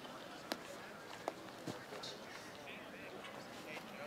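Standing broad jump: a soft thump of feet landing on artificial turf about a second and a half in, with a few faint knocks before it, over faint background chatter of a crowd of players.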